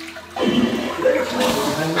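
Electronic smart toilet flushing: water rushing through the bowl, starting about half a second in, with voices over it.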